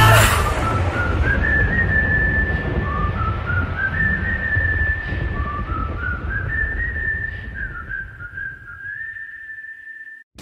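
A whistled melody in the song's outro: single clear notes stepping up and down in short phrases, over a low rumbling bed that fades out near the end.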